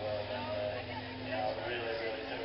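A man talking into a microphone over a public-address system, with a steady low hum and a faint steady drone beneath the voice.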